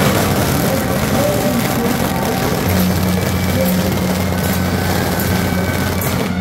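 Loud, dense street and crowd noise, joined about two and a half seconds in by a steady low hum that holds to the end.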